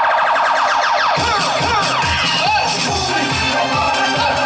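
Instrumental backing track starting up: a run of quick rising synth sweeps, then a steady dance beat comes in about a second in.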